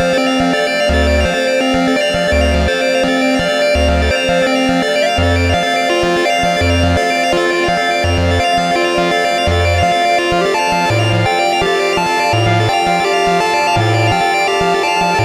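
Moog Subharmonicon analogue synthesizer playing a sequenced pattern: a sustained drone over a low bass note that pulses about every second and a half. A higher, stepping melody line comes in about halfway through.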